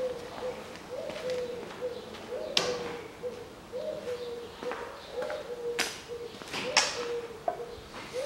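A bird cooing over and over, short low coos about two a second, with a few sharp clicks in among them.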